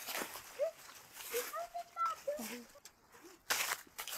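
Footsteps crunching through dry fallen leaves on a forest floor, a few scattered steps with one louder crunch about three and a half seconds in, under faint voices.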